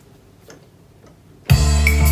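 A couple of faint clicks, then about one and a half seconds in a Korg Pa600 arranger keyboard starts playing loudly, held notes over a strong bass.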